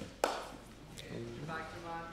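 Grapplers on a mat: a sharp slap about a quarter of a second in and a lighter knock about a second in. Then a voice calls out in a drawn-out tone through the second half.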